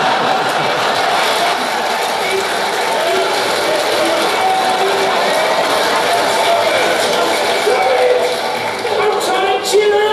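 The soundtrack of a sitcom clip played over a theatre's sound system and heard in the hall: voices and crowd noise mixed with music. A few sharp clicks come near the end.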